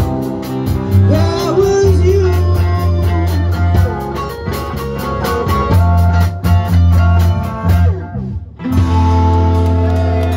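Live band playing: a voice singing over guitar, a steady bass line and cymbal ticks on the beat. The sound drops out briefly about eight seconds in, then comes back.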